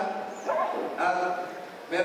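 A man speaking into a stage microphone in short phrases.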